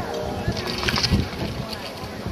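Wind buffeting the microphone in a low rumble, with faint voices in the background.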